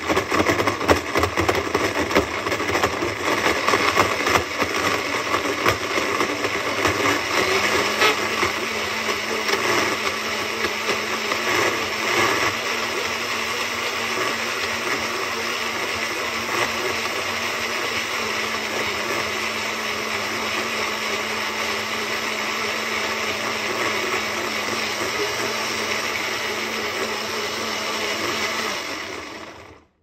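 Blendtec blender running on a timed cycle, blending frozen kale, mango and banana in coconut milk: uneven, with many knocks in the first several seconds as the frozen pieces are broken up, then a smoother steady run once the mix is puréed. It winds down and stops just before the end.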